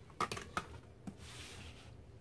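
A few light clicks and knocks as a plastic watercolour tray is handled, then a short sliding rustle as the spiral sketchbook is turned on the table.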